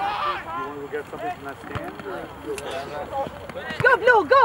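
Overlapping shouts and calls from players and spectators across a soccer field, with a louder shout near the end.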